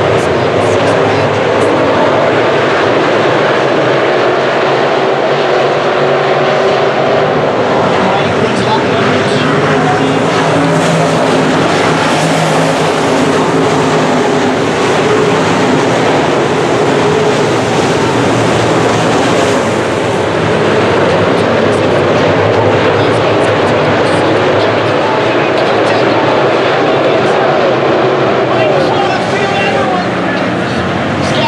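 A field of dirt-track modified race cars running at racing speed around the oval, their V8 engines blending into one loud, steady drone.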